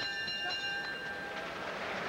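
Boxing ring bell struck to end the round: a bright metallic ding that rings out and fades over about a second and a half.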